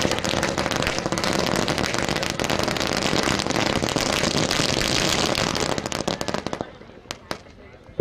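A string of firecrackers going off in a rapid, continuous crackle of small bangs, which dies away after about six seconds, followed by two last sharp pops near the end.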